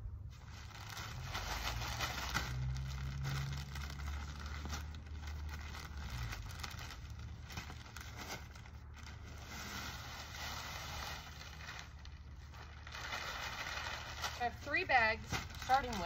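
Plastic bag of garden soil crinkling and rustling as it is handled and tipped out, with soil sliding out of the bag onto the bed.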